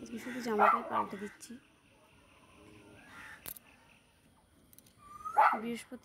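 A dog barking: a short burst of barks in the first second, then one loud, sharp yip about five seconds in.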